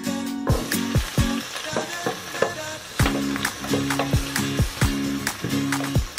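Chopped onion goes into hot olive oil in a stainless steel pot and sizzles from about half a second in, stirred with a wooden spoon. Background music with a steady beat plays throughout.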